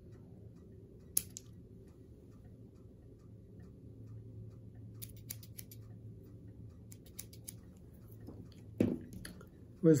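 Small fly-tying scissors snipping off excess wing-case material at the hook: a sharp click about a second in, then short runs of faint clicks around five and seven seconds in, over a low steady hum. A brief soft thump just before nine seconds.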